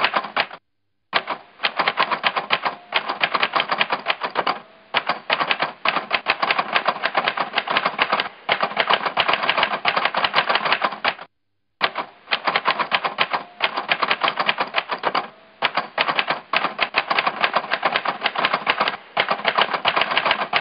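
Rapid typewriter keystroke clicks in long runs, broken by two brief silences, about half a second in and just past the middle.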